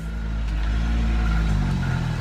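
A motor engine running steadily, its pitch climbing a little near the end as it speeds up.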